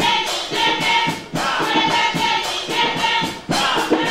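Live Afrobeat band playing, with a chorus of voices singing short phrases over the percussion and horns; the phrases break briefly twice.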